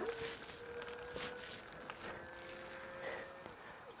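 Muddyfox Electric Avenue e-bike's electric assist motor whining as the pedals are turned, the assist cutting in straight away. A steady whine that rises slightly in pitch and stops about three and a half seconds in.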